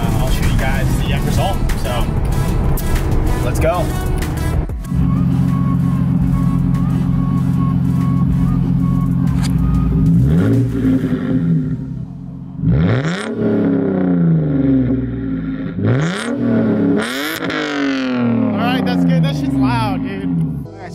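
Lexus IS300's 2JZ-GE inline-six through a straight-piped exhaust: engine and road noise from inside the moving car, then a steady run at constant revs, then about four sharp revs that rise and fall from about ten seconds in.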